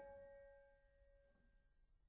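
Sparse solo piano: a single note struck at the start rings and fades away over about a second and a half, over the dying tail of a chord, leaving near silence.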